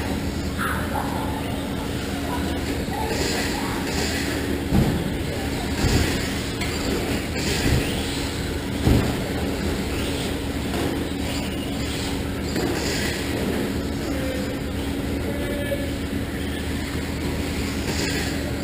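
A pack of Traxxas Slash electric RC short-course trucks racing on a dirt track, with the steady whine of their motors and tyres running over the dirt. A few louder thumps come in the middle.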